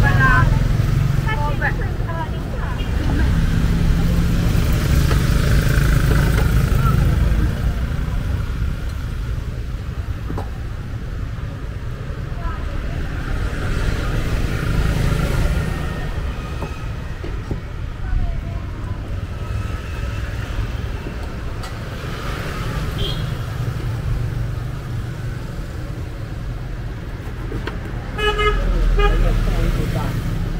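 Street traffic with engines running, a vehicle horn tooting, and voices in the background.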